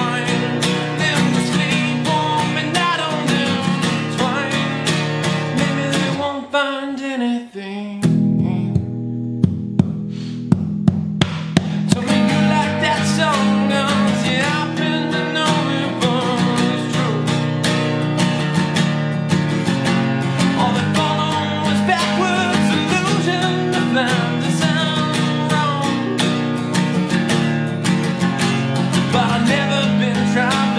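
Acoustic guitar strummed steadily. About six seconds in the low strings drop out for a moment, then hard strums come back in about two seconds later.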